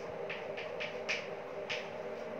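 Chalk writing on a blackboard: about five short, sharp strokes and taps spread across the two seconds.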